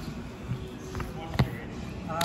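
A football knocking on a hardwood sports-hall floor: one sharp knock about one and a half seconds in, with fainter knocks before it.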